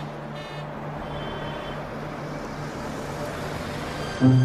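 Steady road traffic noise that swells slightly and then holds, with a low pulsing tone underneath.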